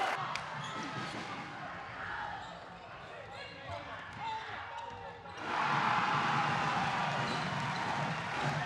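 Game sound from an indoor basketball match: a ball bouncing on the hardwood court and scattered knocks over a murmuring crowd. About five seconds in, the crowd breaks into loud cheering, the sound of a made basket.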